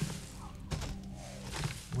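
Quiet film soundtrack with a single dull thud about three-quarters of a second in.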